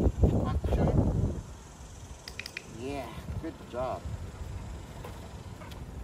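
A man gives a dog a short spoken command, "Up." A low rumble of wind on the microphone runs through the first second or so, and a quick cluster of sharp clicks comes just before the command.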